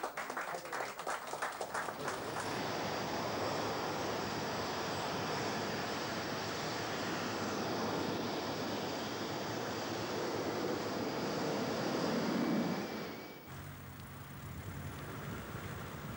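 Brief clapping, then the steady loud noise of a jet airliner (a Boeing 747) taking off, with a high whine over the roar. About 13 seconds in it cuts off abruptly to a quieter low hum.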